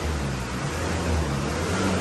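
Perodua Myvi's engine running at low revs with a steady low hum, under a steady hiss.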